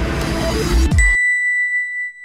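Electronic outro music with a heavy beat that cuts off about a second in, as a single bright ding sounds and rings on after it.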